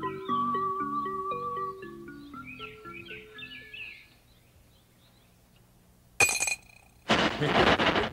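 Cartoon background music: short mallet-percussion notes stepping downward under a warbling higher melody, fading away about halfway through. After a pause, a sharp clinking hit with a brief ringing tone, then a loud noisy sound effect near the end with a laugh.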